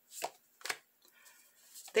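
Tarot cards being handled: two short, sharp snaps about half a second apart as a card is pulled and laid down.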